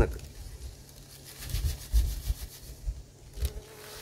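Light rustling and a few short taps as a foil packet of green tea is handled, over a low steady rumble.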